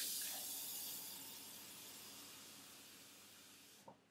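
Kitchen faucet running water into a drinking glass: a steady rush that starts suddenly, grows gradually softer, and cuts off just before the end as the tap is shut.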